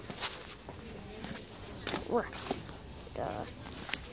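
Handling noise from a moving phone: rubbing and a few sharp knocks, with a short indistinct voice about two seconds in.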